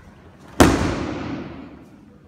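A judoka thrown onto the tatami mats, landing in a breakfall: one loud, sharp slap of body and arm on the mat about half a second in, its echo in the hall dying away over about a second.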